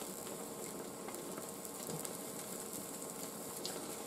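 Egg omelette with tomato sauce frying on low heat in a nonstick pan: a faint, steady sizzle.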